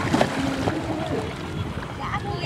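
Shallow sea water splashing and sloshing as people wade and handle an inflatable paddleboard, with a few small knocks in the first half.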